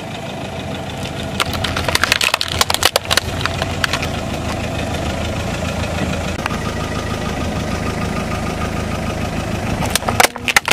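A car's engine idling steadily while plastic toy pieces crackle and snap under a tyre, a dense run of sharp cracks from about one and a half to four seconds in.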